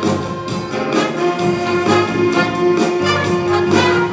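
A wind band's brass and saxophones playing an upbeat number with a steady beat, sustained horn notes over it.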